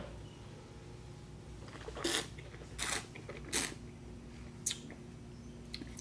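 A wine taster drawing air through a mouthful of red wine: four short slurps starting about two seconds in, the last one briefer.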